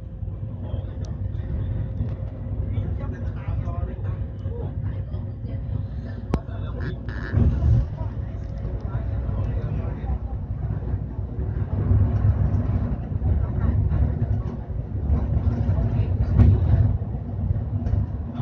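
Steady low rumble of a bus's engine and tyres at cruising speed, heard from inside the cabin, with people talking under it.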